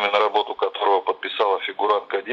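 Speech over a telephone line: a voice talking without a break, thin-sounding with the lows and highs cut off.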